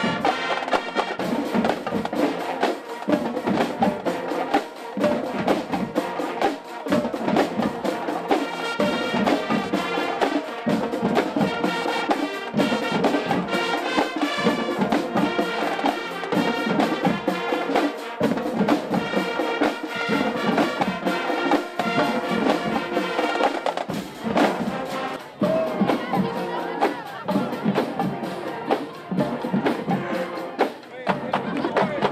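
Marching band playing a brass-led tune, with sousaphones and trumpets over a drumline of snare and bass drums that keeps a steady, driving beat.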